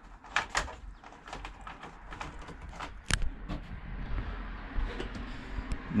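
Scattered clicks, knocks and rustles of a bundle of electrical wires being handled against a bulkhead, with the loudest knock about three seconds in.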